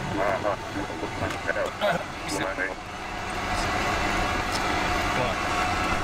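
Indistinct voices in the background, then a steady mechanical hum that grows louder about three seconds in.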